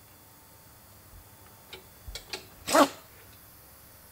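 Quiet factory room tone, then a few light clicks and taps of hand tools on a motorcycle frame that is being bolted together. About three quarters of the way through comes one short, sharp burst of a person's voice.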